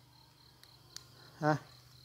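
Faint, steady, high-pitched insect chirring, with a single soft click about a second in.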